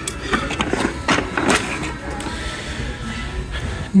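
Wooden decor signs being shifted by hand on a cluttered shelf, giving several light knocks and scrapes, with background music playing.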